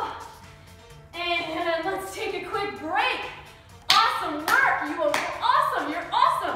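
Hands clapping several times, starting sharply about four seconds in, together with a woman's excited voice, over background music.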